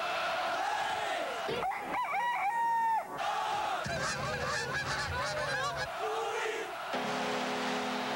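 A quick run of animal sound effects: a crowd-like din mixed with animal cries, then a crowing call with a long held top note about two seconds in. After that comes a flock of geese honking over one another.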